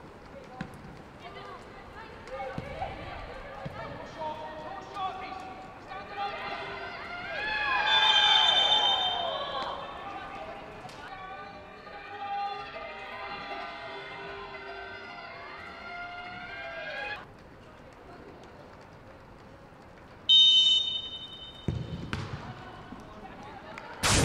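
Football match sound from pitch level: players' shouts and calls carrying across the pitch, with a referee's whistle blown briefly about eight seconds in, amid a swell of shouting, and a louder sharp blast about twenty seconds in.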